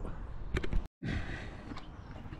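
Low, steady outdoor background noise with no distinct event, broken by a moment of dead silence just before a second in where the recording is cut.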